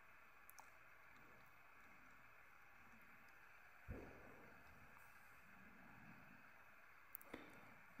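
Near silence: a faint steady hiss from a lit gas burner. About four seconds in there is one light knock as the iron hot plate is turned by its handle, and a couple of small clicks come near the end.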